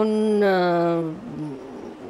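A woman's voice holding one long drawn-out vowel for about a second, its pitch sliding slowly down, then trailing off into a short low murmur.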